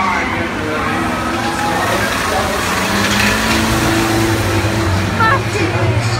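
Engines of old vans in a banger race running round the track, with a steady engine drone that grows stronger about halfway through, mixed with people's voices.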